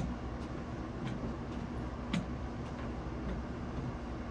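Steady low outdoor background rumble and hum, with a few faint, sharp ticks scattered through it and no speech.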